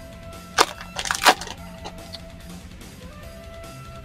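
Foil trading-card pack wrapper crackling as it is pulled open, with a few sharp crinkles about half a second and a second in, over faint background music.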